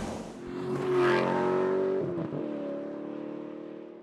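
A motor vehicle engine revving up about a second in, then holding a steady note that fades away.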